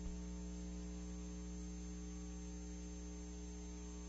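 Low, steady electrical hum with a faint high-pitched whine above it. It does not change throughout.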